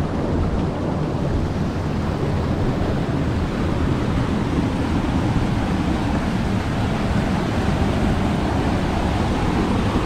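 Steady rush of river water flowing over rocks, with a low rumble of wind buffeting the microphone.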